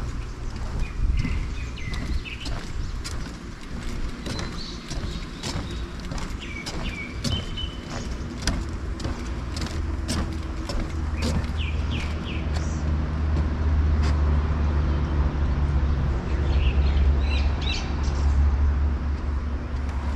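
Small birds chirping and calling, with steady footsteps on a wooden boardwalk. A low rumble swells about halfway through and stays.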